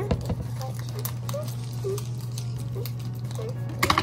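Light scattered taps and rustles of hands handling the gingerbread house, candies and plastic wrappers on a table, over a steady low hum.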